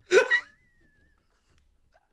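A man's short burst of laughter, two quick bursts in the first half-second, cut off into near silence.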